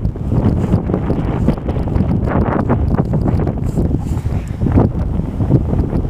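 Wind buffeting the microphone: a loud, uneven rumble.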